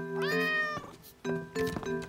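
A cat meows once, a half-second call that rises in pitch at its start, over light background music of steady mallet-like notes.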